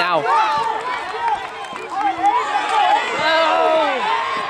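Several spectators' raised voices calling out over one another, with crowd chatter, and no one voice clear.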